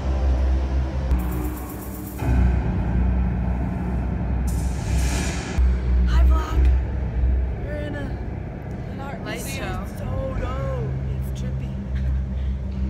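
Music with a loud, deep bass line that steps to a new note about two seconds in. In the second half, voices glide up and down in pitch.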